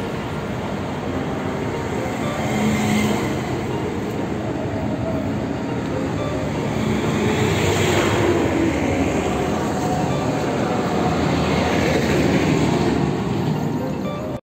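A large sleeper coach bus moving past at close range, its engine and tyres running steadily and growing a little louder from about halfway through as the rear of the bus goes by.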